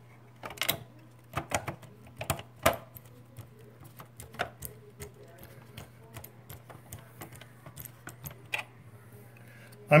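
Irregular sharp clicks and taps of a screwdriver and small screws against hard plastic as screws are set into the incubator's plastic housing. The clicks come thick and close together in the first few seconds and thin out later.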